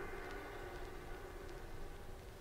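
Late-1960s electronic tape music: a cluster of sustained electronic tones dying away over tape hiss and a low rumble, with a few faint clicks.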